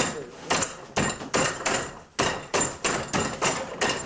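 Hands and forearms striking the arms of a wooden dummy: a fast, irregular run of hard wooden knocks, about three a second.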